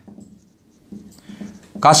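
Marker pen writing on a whiteboard: faint strokes of the felt tip on the board, then a man's voice picks up near the end.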